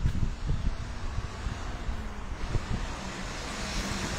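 Outdoor background noise: a low rumble of wind on the microphone and distant traffic, with a few dull bumps near the start and again about two and a half seconds in.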